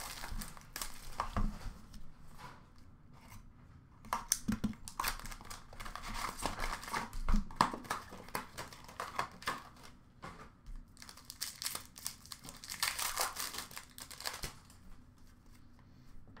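Hockey card pack wrappers crinkling and tearing as packs are ripped open by hand, with irregular bursts of crackle and the rustle of cards being handled between them.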